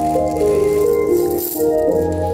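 Runway show music with sustained, shifting melodic notes. A short rattling swell comes in about one and a half seconds in.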